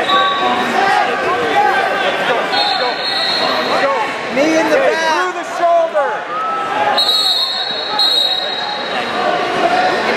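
Busy wrestling-tournament hall: overlapping shouts and voices, with many short squeaks of rubber-soled wrestling shoes on the mats. A high steady tone sounds twice, about two and a half seconds in and again about seven seconds in, each lasting a second or two.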